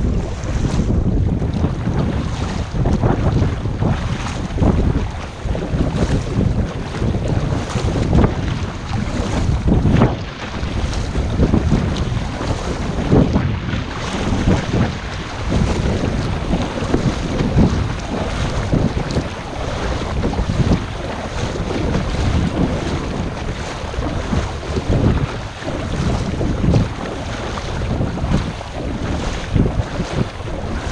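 Wind rumbling on the microphone over water sloshing and splashing around a kayak as it is paddled, in an uneven surge.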